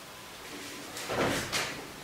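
Handheld whiteboard eraser wiping marker off a whiteboard: a few quick rasping strokes about a second in, after a moment of quiet.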